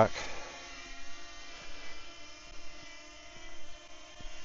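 Small DJI Flip quadcopter's propellers buzzing steadily while it flies in direction-track mode, a layered hum of several steady pitches.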